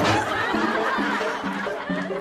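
Audience laughter breaking out suddenly after a punchline, with music playing underneath.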